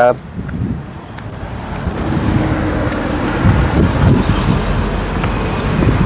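Road traffic noise, vehicle engine and tyres, that grows steadily louder over several seconds.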